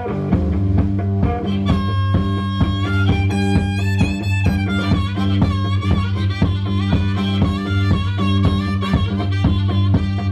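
Live one-man blues band: a driving electric guitar riff over a steady kick-drum beat. About two seconds in, an amplified harmonica comes in with long held notes that bend in pitch.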